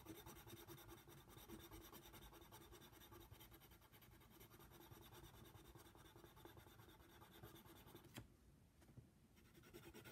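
Faint scratching of a colored pencil on paper in rapid back-and-forth shading strokes. The strokes stop briefly with a single tick about eight seconds in, then resume near the end.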